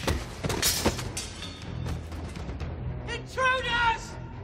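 Film soundtrack: music under a fight scene, with several sharp hits in the first second and a loud, high, wavering cry near the end.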